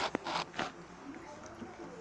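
Plastic cups of slime being handled: a sharp click at the start, then a few short rustling scrapes, with faint voices behind.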